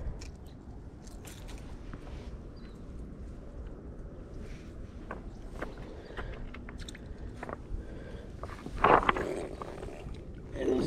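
Quiet handling noises with scattered small clicks from a baitcasting rod and reel. Near the end, shoes scuff loudly on rounded riverbank rocks.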